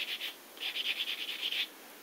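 Soft nail buffer block rubbed quickly back and forth over a fingernail, light rapid scratching strokes, buffing down the dried glue of a nail repair. The strokes pause briefly about a third of a second in and resume for about another second.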